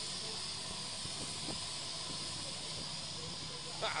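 A steady, even hiss of outdoor background noise.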